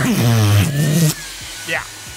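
Cordless handheld vacuum running with its nozzle sucking against a man's lips: a steady rushing hiss with a thin high motor whine. A wavering voice sounds through the suction for about the first second, after which the sound is quieter.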